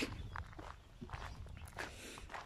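Faint footsteps on a gravel track at a walking pace.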